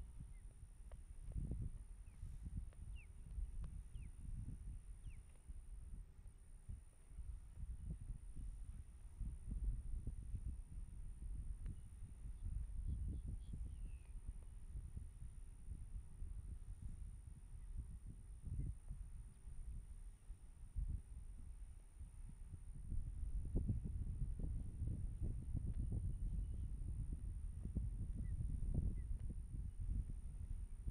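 Gusty wind rumbling on an outdoor microphone, rising and falling and growing stronger about two-thirds of the way through. A few faint bird chirps come through, over a steady faint high-pitched whine.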